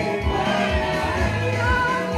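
Live gospel praise music: women singing into microphones over accompaniment with a steady beat.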